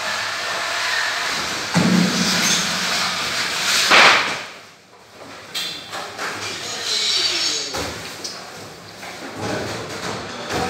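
Whole bonito being laid on and lifted off the steel platform of a weighing scale, giving thuds and knocks over steady room noise; the loudest hit comes about four seconds in.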